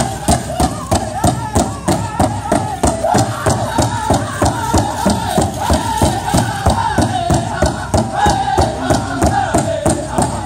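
Powwow drum group singing a fast women's fancy shawl dance song: a chorus of voices in high, wavering chant over an even, steady beat on a large drum.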